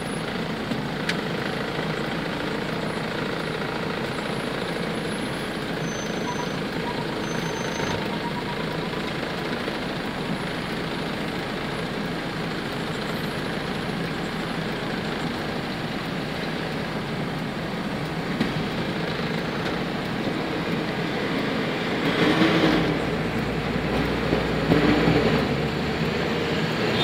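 Steady road and engine noise heard from inside a car moving slowly in highway traffic, growing louder with a low rumble near the end.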